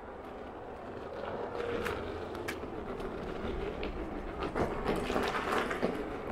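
Veteran Sherman electric unicycle riding over a rough, wet gravel trail: a steady low rumble of tyre and wind noise with scattered clicks and knocks from stones and bumps, growing busier near the end.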